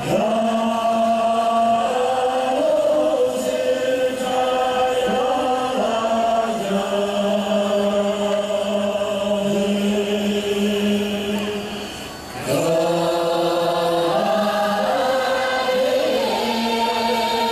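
A choir singing in long held notes, several voices sustaining steady pitches together, with a short break about twelve seconds in before the voices come back in.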